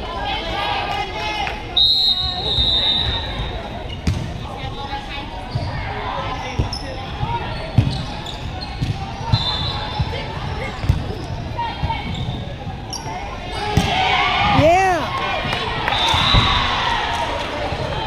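Volleyball rally in a gymnasium: the ball is struck in a string of dull thuds, with sneakers squeaking sharply on the hardwood floor three times and players and spectators calling out, everything echoing in the large hall. The voices swell about fourteen seconds in.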